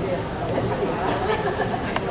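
Chatter of many people talking at once in small groups, overlapping voices with no single speaker standing out.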